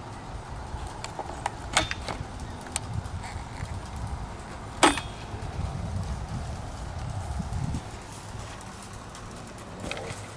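Handheld-camera handling noise: a low rumble on the microphone, with a few sharp clicks and knocks, the loudest just before five seconds in.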